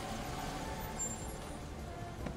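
Steady, low hum of a car engine idling with faint street ambience around it, as a car pulls up and waits.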